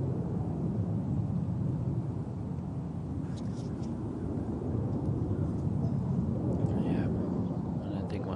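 Steady low rumble of wind on an outdoor microphone, rising and falling, with a few faint distant voices.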